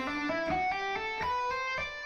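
Electric guitar playing an E Aeolian legato run slowly, single notes stepping up the scale about four a second and joined smoothly with few pick attacks.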